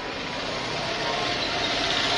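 A motor vehicle engine running, a steady rumbling hiss with a faint hum, growing gradually louder.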